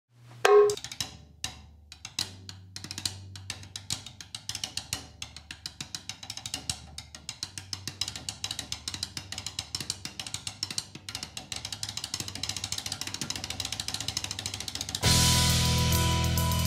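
Drum hits over a low, steady bass tone: one loud hit near the start, then strokes that come faster and faster into a dense build-up. About a second before the end, a full band and drum kit come in loudly at once.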